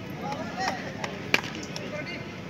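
Brief calls and shouts from people around the pitch, then one sharp knock a little past halfway, over steady outdoor background noise.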